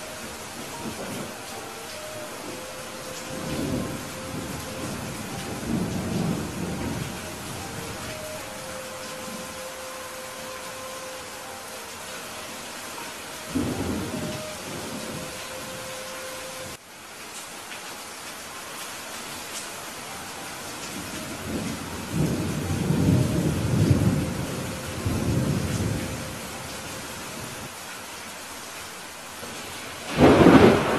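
Steady heavy rain with several low rolls of distant thunder rumbling through it, the longest and loudest coming in the last third.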